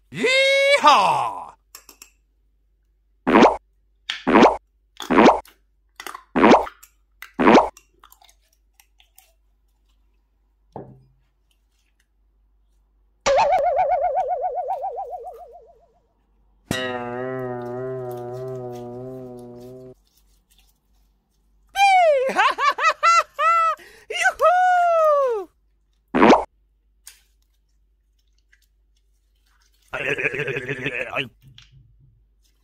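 A string of cartoon sound effects separated by silences: a quick sliding whistle-like glide at the start, five short zips about a second apart, a fading trilled tone, a long wobbling buzz, then a run of bouncy boings rising and falling in pitch, and one last zip.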